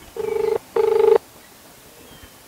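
Ringback tone of an outgoing mobile phone call, heard through the phone's loudspeaker: two short rings in quick succession, the double-ring cadence of a call ringing while nobody has answered yet.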